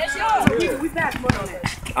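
A basketball bouncing a few times on an outdoor asphalt court, sharp irregular thuds under people talking.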